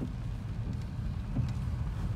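Steady low engine and road rumble heard inside the cabin of a 2016 BMW 3 Series (F30) on the move.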